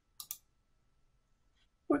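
Two quick, sharp clicks close together, a computer button pressed and released, about a quarter second in.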